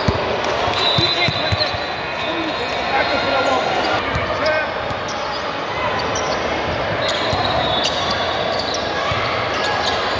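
Basketball bouncing on a hardwood gym floor during a game, with players and spectators talking over the echo of a large hall.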